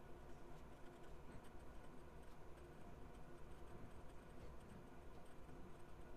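Faint sound of a Platinum 3776 fountain pen's fine 14k gold nib writing on a paper pad, with light ticks from the pen strokes, barely above near silence.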